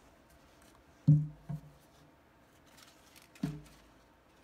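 Mostly quiet room, with a man's short spoken word about a second in, a brief voiced sound just after it and another near the end. A few faint clicks from handling around the glass tank come between them.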